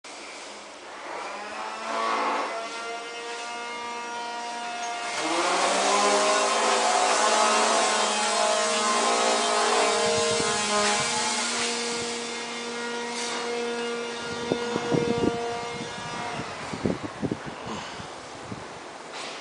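A motor-driven machine humming steadily. Its pitch rises about five seconds in as it speeds up, and it holds that pitch until near the end. A few sharp knocks come near the end.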